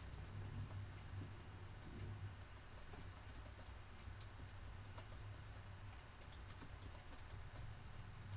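Faint computer-keyboard typing: a run of light, irregular clicks over a low, steady hum.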